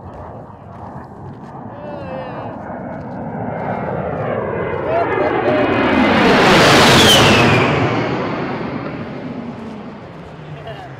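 A-10 Thunderbolt II's twin turbofan jet engines during a low pass overhead: the rushing sound builds, peaks about seven seconds in with a high whine that drops in pitch as the jet goes by, then fades away.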